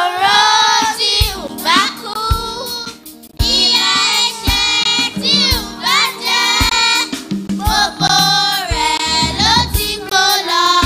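A group of children singing a praise song together over musical accompaniment, with a short break between phrases about three seconds in.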